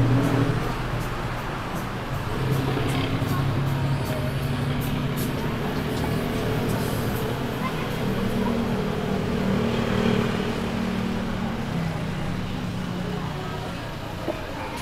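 Busy city street: road traffic running steadily, mixed with music and voices.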